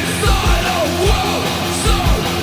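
Oi! punk song played by a full band, with a shouted lead vocal over drums and guitars.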